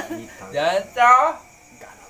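A man's voice giving two short, loud wordless vocal outbursts, the second one falling in pitch.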